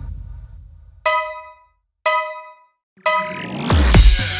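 Countdown chimes of a workout interval timer marking the last seconds of a set. Two identical bell-like dings come a second apart as the background music fades out. About three seconds in, a rising whoosh leads into dance music with a heavy beat.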